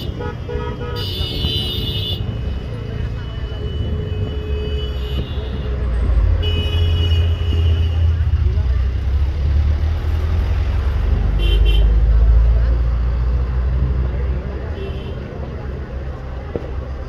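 Vehicle horns sounding several times over a steady low traffic rumble that swells in the middle, with voices in the background.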